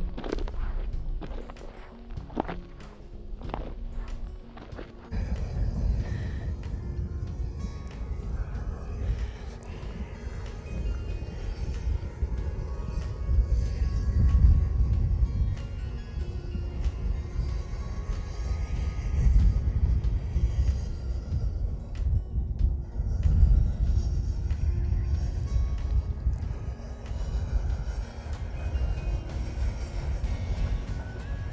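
Footsteps on a loose gravel path for the first few seconds, then music with a heavy bass takes over for the rest.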